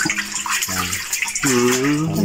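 Water splashing and sloshing as a plastic cup scoops and pours water over a tub crowded with live eels. About one and a half seconds in, a voice begins a long, drawn-out sung note.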